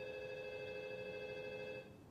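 Wall-mounted telephone ringing: one long steady electronic ring of several tones sounding together, which stops near the end.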